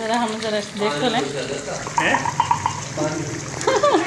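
Mostly people's voices talking, over a steady low hum.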